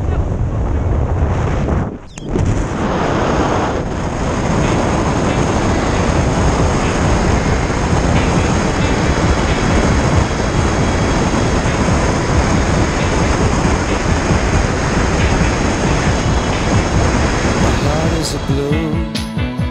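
Loud steady rush of wind buffeting the camera microphone during a tandem skydive, with a brief drop about two seconds in.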